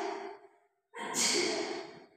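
Two breathy exhalations like sighs: one already under way and fading out in the first half second, a second starting abruptly about a second in and fading away near the end.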